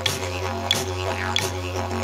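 Didgeridoo droning on a low F#, with a sharp rhythmic accent about every two-thirds of a second and vowel-like sweeps falling in pitch between them.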